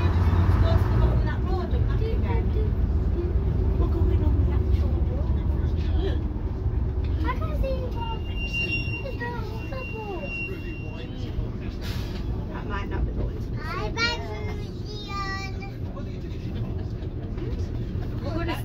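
Leyland Leopard PSU3 coach's diesel engine running on the road, heard from inside the saloon as a steady low drone, louder for the first few seconds and then easing off. A thin high whine sounds for a few seconds midway.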